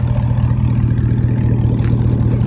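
Exhaust of a 2005 Chevy Silverado's 5.3-litre V8 idling steadily through a straight pipe, the factory muffler cut out, so the exhaust note is unmuffled, deep and loud.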